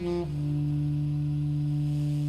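Jazz quartet recording: the tenor saxophone steps down at the end of a phrase and holds one long, steady low note.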